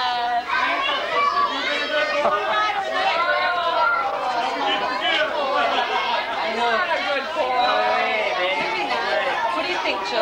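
Several people talking at once: indistinct conversational chatter.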